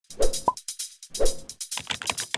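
Intro sound effects for an animated graphic: two soft pops about a second apart, the first followed by a short bright blip. Near the end comes a quick run of keyboard-typing clicks as text is typed into a search bar.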